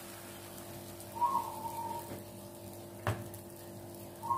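A quiet steady hum with one short whistle-like tone about a second in, dipping slightly in pitch, and a single click near the end.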